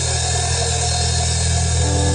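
Rock band's closing chord ringing out: a low note held steady on electric bass and guitar, with no drum strokes.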